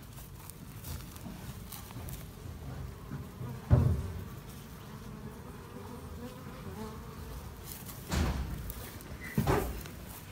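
Honey bees buzzing as they fly in and out of a nest in a gap under a building's siding. A sharp thump a little under four seconds in is the loudest sound, with more bumps near the end.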